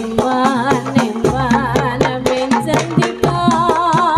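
Jaranan trance-dance music: a gamelan-style ensemble with a steady hand-drum beat, held metallic tones and a high wavering melody line with heavy vibrato.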